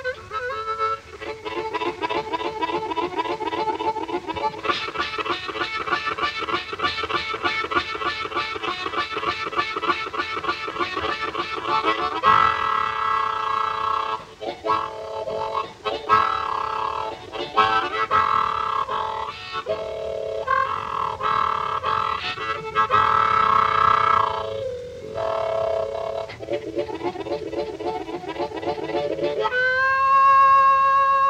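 Solo blues harmonica on an old recording, playing fast, evenly pulsed chugging chords for the first dozen seconds, then longer held chords broken by short gaps.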